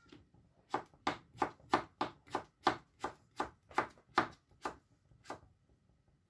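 Knife slicing a cucumber on a cutting board: a steady run of chops, about three a second, that stops about a second before the end.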